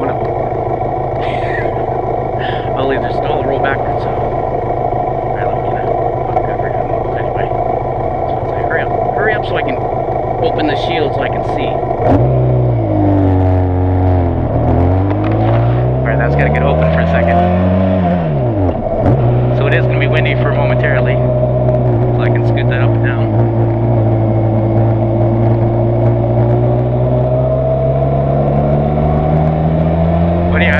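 Benelli TRK 502 parallel-twin motorcycle engine idling at a stop, then pulling away about twelve seconds in. The revs climb and fall back twice with upshifts, settle into a steady cruise, and climb again near the end.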